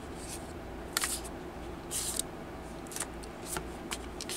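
A deck of Starseed Oracle cards being shuffled by hand, in short bursts of card-on-card rustling about once a second, the longest a little after halfway.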